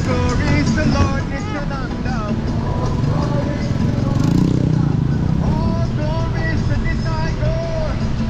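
A voice chanting a wavering melody over a steady low rumble of road and wind noise from riding in traffic. A motor vehicle swells past about four to five seconds in.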